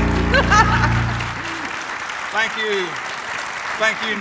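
Audience applauding and cheering as the band's final held chord fades out in the first second and a half. Scattered shouts and voices rise over the clapping.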